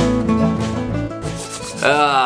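Acoustic guitar background music playing and fading out just past a second in. Near the end, a new sound begins that slides down in pitch.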